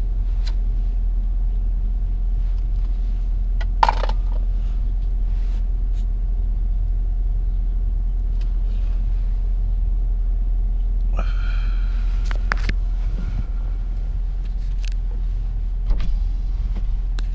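Steady low rumble of a car's interior, with a sharp click about four seconds in and a short hiss about eleven seconds in.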